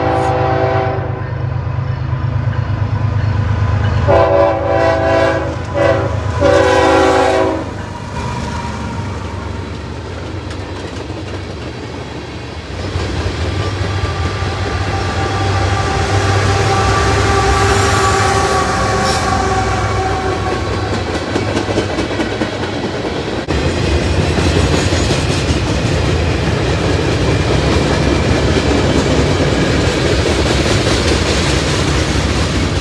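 Freight train's diesel locomotive sounding its air horn: the end of one blast right at the start, then a longer blast a few seconds in, broken briefly and ending about a quarter of the way through. The locomotive's engine rumbles past close by, then a long line of tank cars and boxcars rolls by with steady wheel clatter on the rails.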